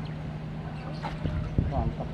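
Distant voices over a steady low hum, with a few short knocks about a second and a half in.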